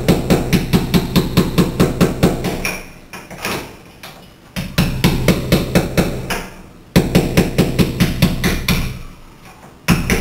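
Hammer driving a chisel in quick, light strikes, about four or five a second, chipping mortar out of the joint around a glass block between drilled holes. The strikes come in runs of two to three seconds with short pauses between.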